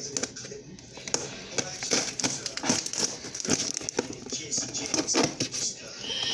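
Scissors blade stabbed into and worked along the packing tape on a cardboard box, making a run of crackling scrapes and sharp clicks as the tape is cut.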